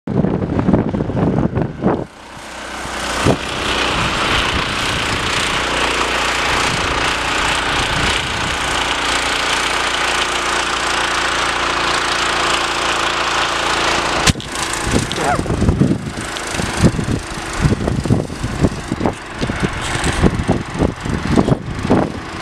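The Lifan 18.5 hp petrol engine of a homemade karakat running under load as it pushes through deep snow. It holds steady for most of the first half. After a sharp click about two-thirds of the way through, its sound turns uneven and surging.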